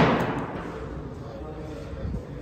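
A weight plate hung from a dip belt chain gives one sharp clank as the lifter starts a weighted dip, fading away over about half a second.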